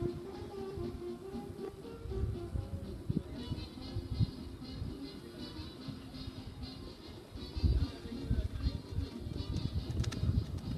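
Music playing over the arena's loudspeakers, with irregular low thuds and rumbles, heaviest a couple of seconds before the end.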